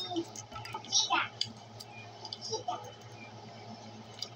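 Light clicks and crinkles of plastic shrink wrap as a sealed Pokémon card tin is handled, with a brief louder rustle about a second in.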